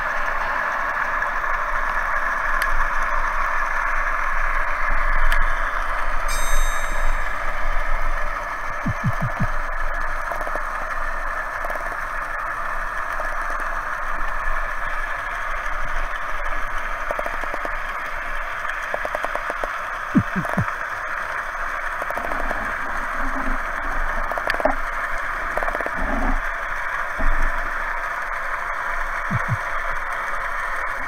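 Underwater ambience picked up by a camera in a waterproof housing: a steady hiss with occasional soft knocks and short rattles as the diver swims and handles the speargun.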